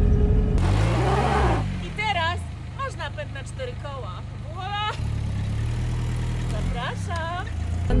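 A 1987 Mitsubishi Pajero's 2.5-litre diesel engine running, heard from inside the cab. There is a short burst of rushing noise about a second in. From about five seconds the engine runs at a lower, steady note.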